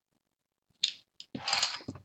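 A sharp click about a second in, a smaller click, then a short mechanical rattle lasting about half a second.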